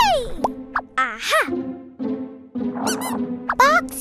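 Cartoon background music with a held low note, over which short squeaky sound effects swoop up and down in pitch several times.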